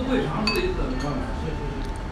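A single light clink of tableware, with a brief ring, about half a second in.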